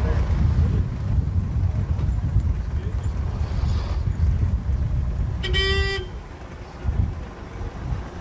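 A vehicle horn toots once, briefly, about five and a half seconds in, over a steady low rumble that eases soon after.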